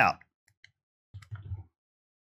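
A few short clicks of a computer keyboard and mouse as a value is entered into a software field: two faint ticks about half a second in, then a quick run of clicks past the middle.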